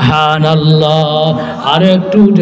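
A waz preacher's male voice chanting a long, held melodic phrase into a microphone, with a rising slide in pitch near the end: the sung style of delivery used in a Bangla waz sermon.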